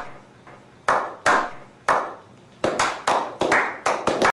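A slow clap: hands clapping in single claps spaced about half a second apart, then speeding up to several claps a second in the second half.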